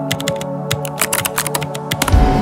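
Rapid, irregular keystroke clicks from a Keyboardio Atreus mechanical keyboard being typed on, with background music underneath.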